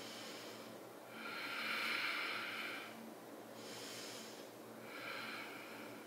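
A woman breathing slowly and deeply: one long breath starting about a second in and lasting some two seconds, then two fainter, shorter breaths.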